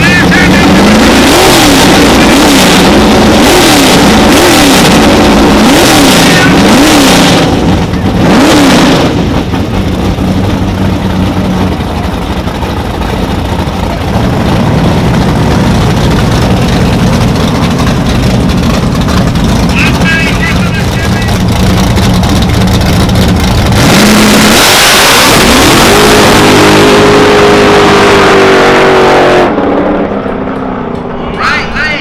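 Drag-racing V8s at the starting line: a Fox-body Mustang's engine is revved up and down about once a second, then both cars hold a steadier note while staging. About 24 s in they launch and pull hard at full throttle, the pitch climbing until it fades just before the end.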